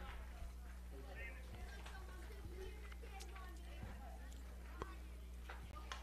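Faint distant voices over a steady low hum, with a few light clicks.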